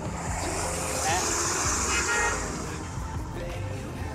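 Street traffic noise over a steady low engine rumble, with a vehicle horn honking about two seconds in.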